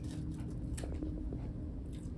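Steady low room hum with a few faint clicks and rustles from gloved hands handling a gauze dressing and drain on the neck.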